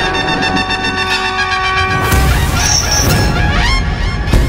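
Dramatic TV background score: a held, brassy chord that stops about halfway through, followed by a few rising whooshing sweeps.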